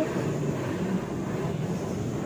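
Self-service car wash pressure-washer wand spraying water onto a car's roof: a steady hiss of spray.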